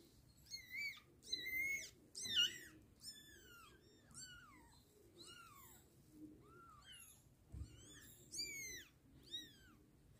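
Newborn kittens mewing: a quick run of thin, high-pitched cries, most sliding down in pitch, loudest about two and a half seconds in.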